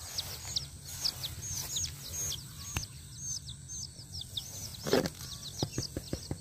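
A small bird calling over and over, a short high-pitched chirp two or three times a second. A few sharp knocks and quick clicks come in near the end, the loudest about five seconds in.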